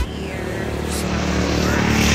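A motorcycle tricycle's engine running as it passes along the road, getting gradually louder.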